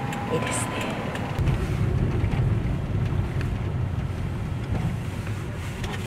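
Road and engine noise inside a moving van's cabin: a steady low rumble that grows louder about a second and a half in.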